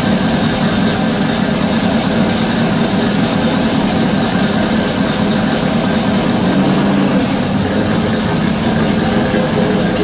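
Ford 5.0 HO V8 of a 1987 Mustang LX idling steadily.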